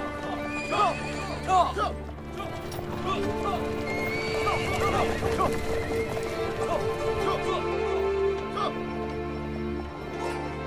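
Horses neighing several times, loudest in the first two seconds, with hooves clopping as a team of chariot horses moves off, over sustained background music.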